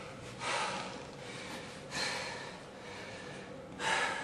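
A man breathing hard while exercising: three forceful exhalations about a second and a half apart, over a faint steady hum.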